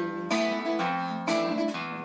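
Strummed acoustic guitar chords in a song, a new strum about once a second, in a pause between sung lines.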